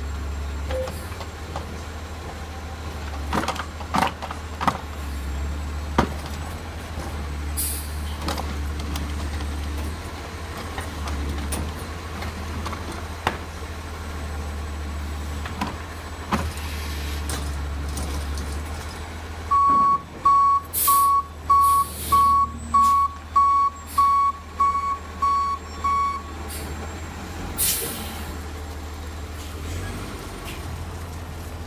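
Garbage truck engine running steadily while its automated arm lifts and empties a yard-waste cart, with several metal clanks. Past the middle, the truck's reversing alarm beeps about a dozen times, about two a second, and near the end an air brake lets out a short hiss.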